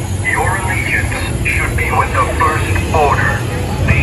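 A filtered, radio-style amplified voice speaking in short phrases over a loudspeaker, with a steady low rumble underneath.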